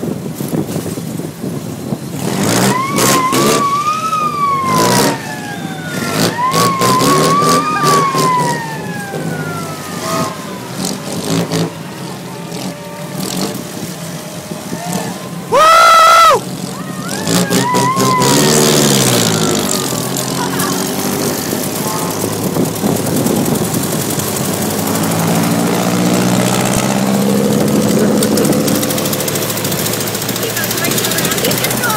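Ford Model T speedsters' four-cylinder flathead engines revving up and down on the track, the pitch rising and falling several times. About halfway through there is a horn blast about a second long, the loudest sound. Near the end the engines settle into a steadier drone.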